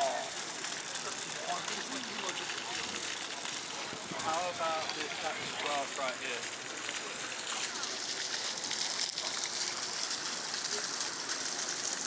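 Water from a small park fountain jetting and splashing steadily, with brief faint voices of people about four to six seconds in.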